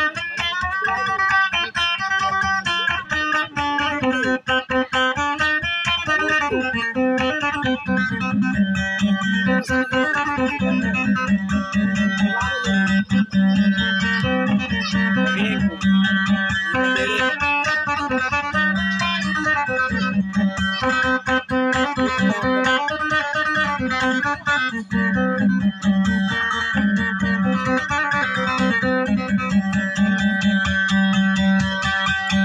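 Guitar played solo as dayunday accompaniment: a busy melody of fast plucked, rapidly repeated notes. About eight seconds in, a strong low note starts sounding again and again beneath the melody.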